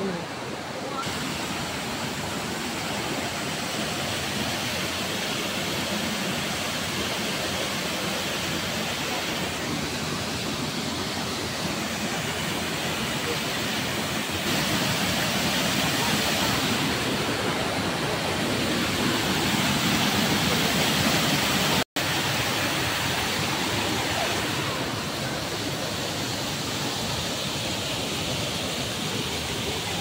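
Rushing water of a mountain river and a small weir waterfall, a steady rush that grows louder toward the middle and breaks off for an instant about 22 seconds in.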